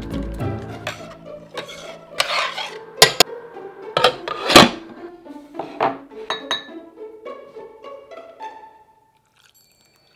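Kitchen clinks and knocks of a ceramic bowl and utensils as sauce ingredients go into a small bowl, with several sharp clinks in the middle. Soft background music plays under them, its bass dropping out just after the start.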